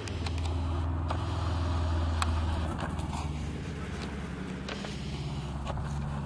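A steady low motor hum, a little louder over the first half, with a few faint clicks.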